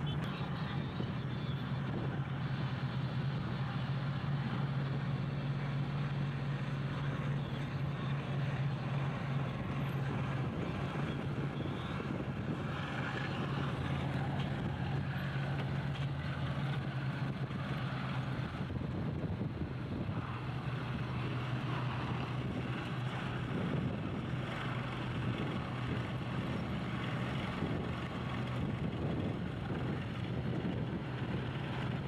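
Vehicle engines running with a steady low drone under a hiss of wind and road noise; the drone's pitch shifts slightly twice, about ten and twenty seconds in.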